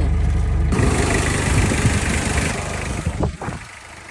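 1987 Mitsubishi Pajero's 2.5-litre diesel engine idling: a steady low drone at first, which changes abruptly a little under a second in to a louder, noisier sound that dies down shortly before the end.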